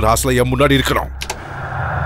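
A man's voice for about the first second, then a steady whirring hiss with a low hum that sets in after a cut and holds to the end.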